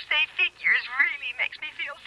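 A voice talking over a telephone line: thin, band-limited speech.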